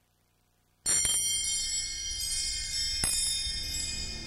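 Near silence, then about a second in a cluster of high chimes rings out suddenly and sustains, with another struck accent about three seconds in: the opening of the programme's theme music.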